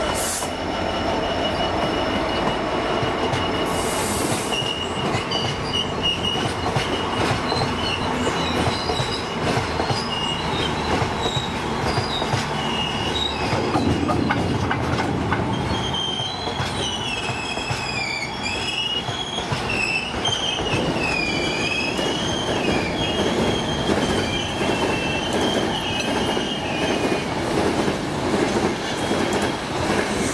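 GBRf Class 66 diesel locomotive passing at the start, then its freight train of open box wagons rolling by with a steady rumble and clatter of wheels on rail. A high-pitched wheel squeal wavers in pitch through most of the pass, strongest in the second half.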